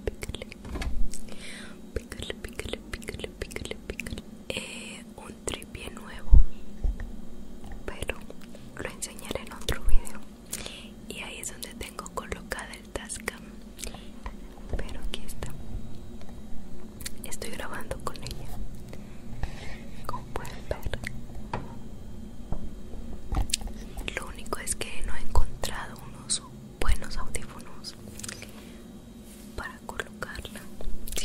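A woman whispering close to a handheld stereo recorder's microphones, with many small mouth and handling clicks. Two sharp knocks come about six and ten seconds in.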